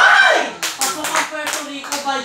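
A loud shout right at the start, then a quick run of about seven hand claps from a person in a small room, with voices underneath.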